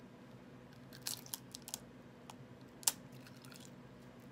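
Roasted seaweed snack sheet being bitten and chewed: a run of short, crisp crunches about a second in, and one sharper, louder crunch near three seconds in.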